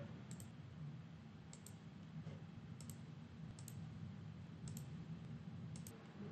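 Faint computer mouse clicks, about six of them spaced out over several seconds, some in quick press-and-release pairs, over a low steady room hum.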